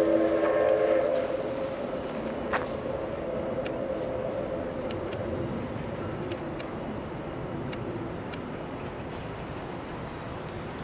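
Steam locomotive whistle sounding one long chord of several notes, then fading away within the first two seconds. After it comes the steady, distant running noise of the approaching steam train.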